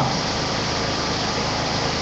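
Steady background hum and hiss of room noise, even throughout, with a faint regular low pulsing.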